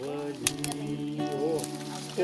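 A voice singing a melody in long held notes that bend here and there, with a few sharp clicks.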